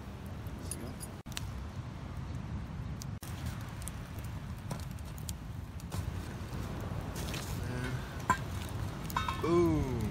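Clams and mussels in a metal camp pot, with its lid, clinking a few separate times over a steady low outdoor rumble. A short falling vocal sound comes near the end.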